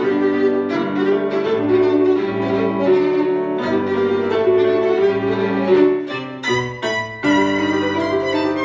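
Violin playing a melody in long, sustained bowed notes over a digital piano accompaniment. About six to seven seconds in come a few short, sharply accented notes.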